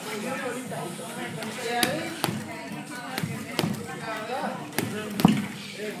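Boxing gloves smacking a leather double-end bag: several sharp, irregularly spaced hits, the loudest one near the end, over people talking in the background.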